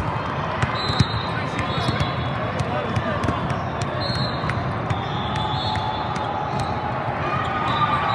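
Busy volleyball hall ambience: a steady murmur of many voices echoing in a large hall, with frequent sharp knocks of volleyballs being struck and bouncing on the courts, and a few brief high tones.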